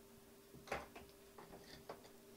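A few faint clicks and taps of hand tools being handled, a pair of pliers set down on a cutting mat; the loudest click comes about three-quarters of a second in, with smaller ones near the end.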